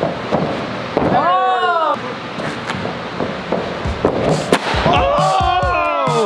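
Excited men's shouts and whoops as a person dives through a shape cut in a foam insulation board. A single sharp impact sounds about four and a half seconds in, followed by more shouting.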